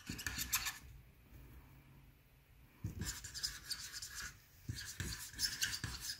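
Stampin' Blends alcohol marker's bullet tip scratching on cardstock in small circular strokes, in two spells with a pause of about two seconds between them.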